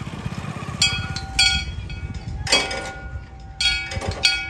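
Motorcycle engine running close by with a low, pulsing chug, with a few short, sharp high-pitched sounds over it.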